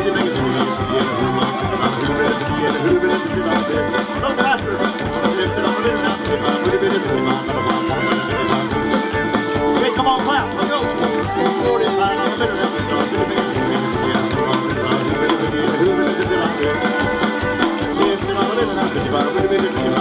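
Live country band playing an instrumental break with a steady beat: fiddle, electric and acoustic guitars, bass and drums.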